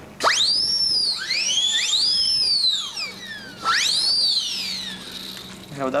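Small pink plastic novelty whistle being blown, its shrill tones swooping up and down in pitch with two or three tones at once. One long warbling blow is followed by a second, shorter one about halfway through.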